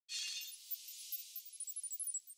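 Logo sting sound effect: a sudden bright, high-pitched burst that thins into scattered short, very high tinkles and fades away.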